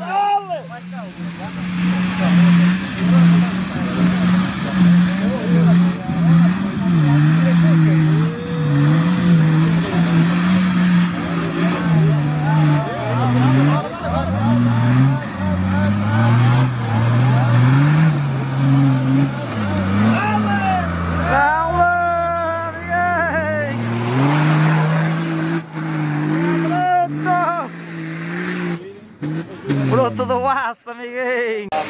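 A modified off-road 4x4's engine revving up and down under heavy load as the truck climbs a steep, rocky dirt slope, its pitch rising and falling with the throttle. Spectators shout about two-thirds of the way through.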